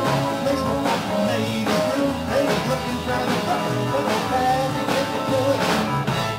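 Live band playing: electric guitar, bass guitar and drum kit, with a steady drum beat.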